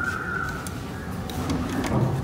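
A hotel room door being unlocked and opened: a steady high beep in the first half-second, then a few sharp clicks of the lock and the round metal knob being turned.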